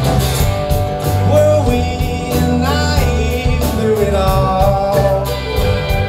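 Live indie folk-rock band playing a song: drums keep a steady beat under bass, strummed acoustic and electric guitars and banjo, with a sung lead vocal.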